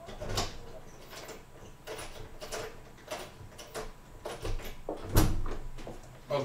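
Front entrance door being opened from outside: a string of sharp clicks and knocks, about ten over six seconds, the loudest a little after five seconds in.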